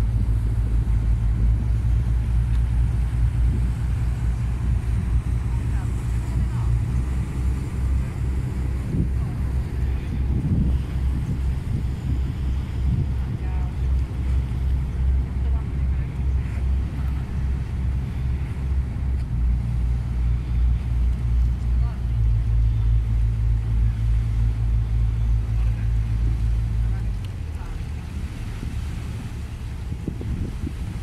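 A water bus's engine drones steadily under way, a low, even hum with some water and wind noise over it. Near the end the engine note drops and grows quieter as the boat eases off on its approach.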